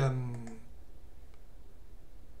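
A drawn-out spoken 'euh' trailing off, then a faint single computer-mouse click about a second and a half in, over a steady low hum.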